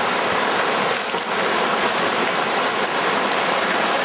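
River water rushing steadily over a shallow stony riffle, an even rush with no breaks. A few faint high ticks sound about a second in.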